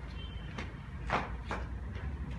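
Quiet room noise: a steady low hum with three faint, short scuffs or rustles about half a second apart.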